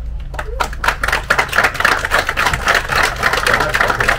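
Crowd of guests applauding, the claps starting a moment in and building within a second to dense, steady clapping.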